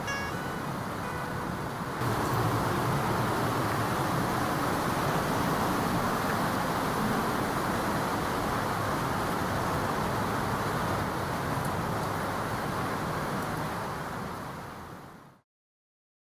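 A steady rushing noise with no clear pitch. It gets louder about two seconds in and fades out just before the end.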